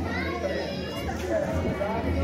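Several people talking at once in casual chatter, with no single clear speaker and some higher-pitched voices among them.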